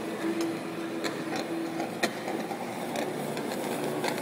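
TIG welding arc burning steadily on a metal tube: an even hiss with a faint low hum under it, and a few sharp ticks scattered through.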